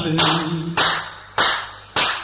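Tamil film song music breaking to percussion: a held low note fades out, then four evenly spaced clap-like hits, about 0.6 s apart, each dying away quickly.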